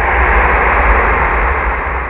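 Whooshing transition sound effect: a rush of noise over a deep rumble, like a jet passing over, that swells to a peak about a second in and then fades away.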